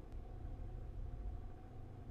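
Quiet room tone: a low, steady rumble with a faint constant hum.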